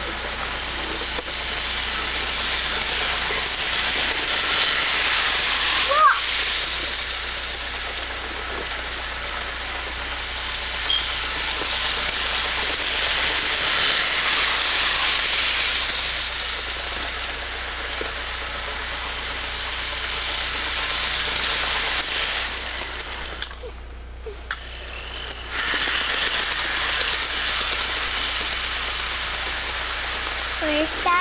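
Toy electric train running around its track: a steady rushing rattle that swells and fades about every eight or nine seconds as it laps the loop.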